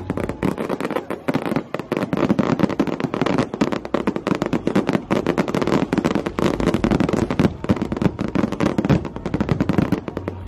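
Fireworks going off in a dense, continuous run of bangs and crackles, many per second, with no let-up.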